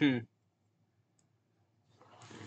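A short, low 'hmm' with a falling pitch, then quiet room tone, with speech starting again near the end.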